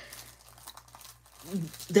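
Soft crinkling of a clear cellophane sleeve as hands press and smooth a packaged sticker kit, with a few faint ticks; a woman's voice starts near the end.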